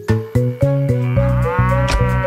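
A cartoon cow's single long moo, beginning about a second in, over children's-song backing music with a steady bass line.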